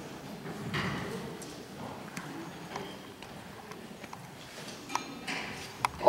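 Low hall ambience with a faint murmur of voices and a few scattered light clicks and knocks, the sharpest just before the end.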